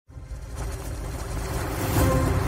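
An intro whoosh effect: a rushing noise with a deep rumble that swells steadily louder, building up to the opening music.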